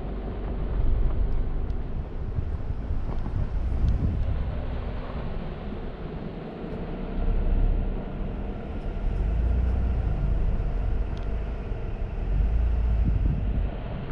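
Vehicle driving along a gravel road: a steady engine and tyre hum under repeated gusts of wind buffeting the microphone.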